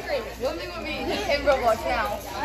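Indistinct chatter: several girls' voices talking over one another, no words clear.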